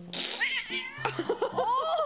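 A cat gives a short noisy burst and brief cries. About a second in, a woman starts laughing in quick bursts. Soft background music plays underneath.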